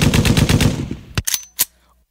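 Rapid machine-gun fire sound effect, about ten shots a second, fading away about a second in, then a few single shots and a stop near the end.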